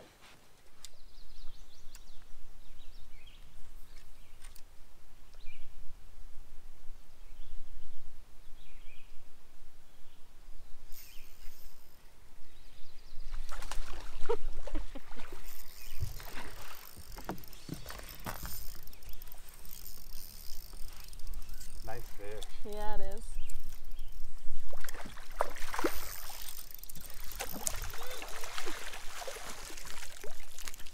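A hooked bass being fought on a spinning rod from a boat: water splashing around the fish and the reel working. The sound gets busier and louder from about halfway through, with short excited vocal sounds.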